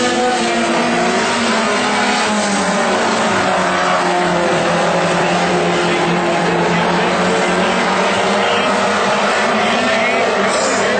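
WISSOTA Mod Four four-cylinder race car engines running hard on a dirt oval. The engine notes waver up and down as the cars lap, over a steady haze of track noise.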